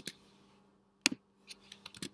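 A handful of quiet, sharp clicks from a computer keyboard and mouse, scattered unevenly: one near the start, a pair about a second in, and a few more near the end.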